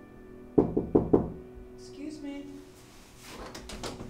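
Three quick knocks of knuckles on a panelled door, about half a second in, over soft background music, followed by fainter clicks near the end.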